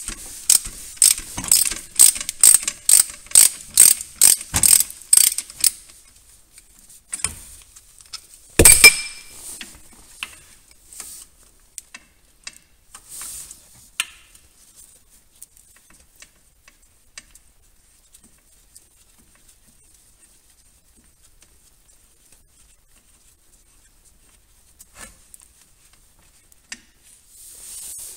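Ratchet wrench clicking, about three clicks a second for some five seconds, as it backs out the loosened 17 mm hex fill plug of a VW 02J five-speed manual gearbox. A single sharp clack follows a few seconds later, then only faint handling knocks.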